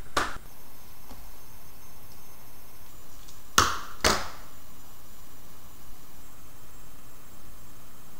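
Small handling noises from wiring work at a circuit board's screw terminals: a short scuff at the start and two quick ones about three and a half and four seconds in, over a steady hiss.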